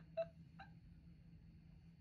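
A woman laughing quietly: two short, breathy laugh bursts in the first second, then only faint room hum.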